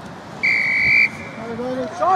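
One short, steady blast of a referee's whistle about half a second in. Shouting voices on the sideline follow.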